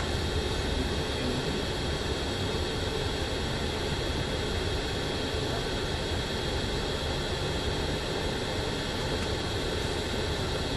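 Steady drone of a bus heard from inside the passenger cabin, engine and road noise as it moves slowly in town traffic.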